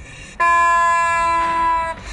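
A single loud honking tone, steady in pitch, about a second and a half long, starting and stopping abruptly.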